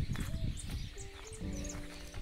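Background music: a melody of held notes stepping from one pitch to another, over a low rumble.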